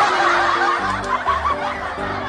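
A burst of laughter, like a comedy laugh track, over light background music with a simple stepping tune.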